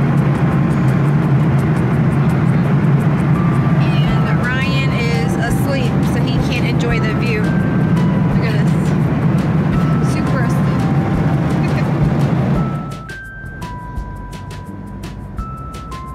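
Steady, loud low noise of an airliner cabin in cruise flight, with background music playing over it. The cabin noise drops out suddenly about thirteen seconds in, leaving the music.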